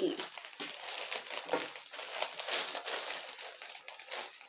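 Clear polypropylene plastic bag crinkling and crackling irregularly as a folded crochet rug is pushed into it and the bag is handled and smoothed.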